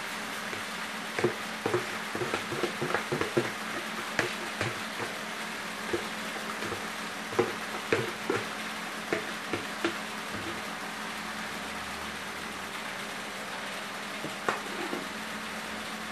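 A plastic tub of lye solution mixed with cashew pulp, held upside down over a bowl of cooking oil while it drains: irregular light knocks and drips over a steady hiss, thinning out near the end.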